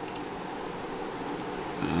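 Steady background hiss of room noise with a faint high-pitched whine in it and no distinct events; a man's voice starts right at the end.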